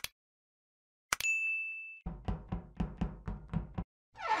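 Animated subscribe-button sound effects: a click, then a bell-like ding about a second in, followed by a quick run of about ten knocks, roughly five a second.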